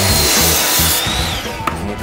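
Ryobi sliding miter saw cutting through a dead tree branch. The cutting noise stops about a second in, and the blade's whine then winds down.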